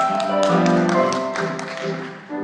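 Piano playing a lively tune in sharply struck notes.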